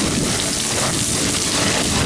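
Loose limestone scree crunching and sliding underfoot on a fast downhill walk: a loud, even rushing noise with no break.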